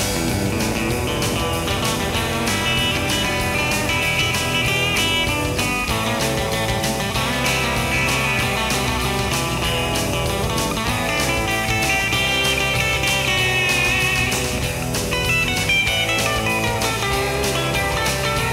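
Instrumental break in a rock song: an electric guitar plays a lead line over bass and a steady drum beat, with no vocals.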